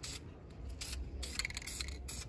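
Aerosol can of high-heat paint spraying in several short hissing bursts, over a low background rumble.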